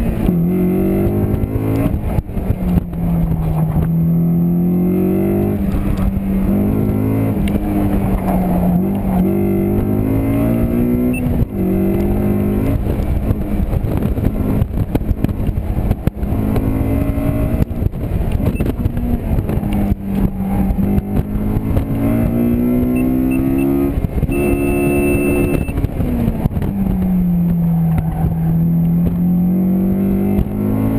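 Roadster's engine revving hard under load through an autocross run, heard from inside the open cockpit, its pitch climbing and dropping again and again with each burst of throttle and lift for the cones. A brief high beep sounds late in the run.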